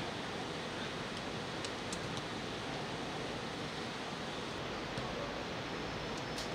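Steady, even hiss of open-air ambience, with a few faint short clicks about one to two seconds in.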